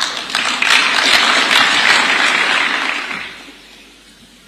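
Audience applauding. The clapping starts at once, holds steady, and dies away about three seconds in.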